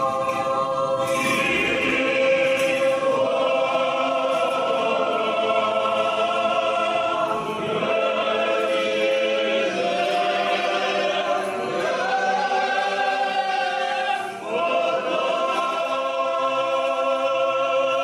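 Church choir singing Orthodox liturgical chant in long held chords, with short breaks between phrases.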